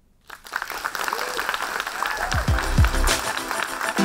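Audience applause breaking out at the end of a poem, with voices in the crowd. About halfway through, electronic outro music with deep bass drum hits fades in over it.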